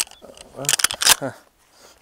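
Sharp metallic clicks and clatter from a shotgun's action as it is handled and loaded by hand for the next shot. The clicks bunch up about halfway through, then it goes quiet.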